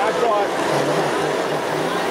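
O gauge model train passenger cars rolling past on three-rail track, making a steady running rumble, with people talking nearby.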